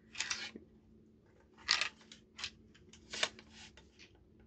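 Handling noise from a Colt SP-1 AR-15 rifle being turned over in the hands: four short scraping, clicking sounds of hands and parts against the rifle, the loudest a little under two seconds in.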